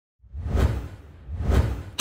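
Two whoosh sound effects from an animated intro, each swelling up and dying away with a low rumble underneath, about a second apart.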